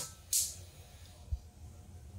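Gas stove burner running at a medium-low flame with a faint steady hiss, a short louder rush of hiss near the start. A single soft low thump about two-thirds of the way in.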